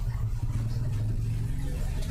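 A steady low-pitched rumble or drone runs without a break, with no speech over it.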